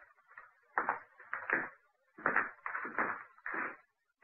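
Radio-drama sound effects of people moving to a table and settling in: about six short knocks and scuffs, irregularly spaced.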